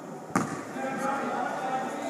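A basketball bouncing once on a hardwood gym floor, a sharp thud about a third of a second in, with voices in the gym behind it.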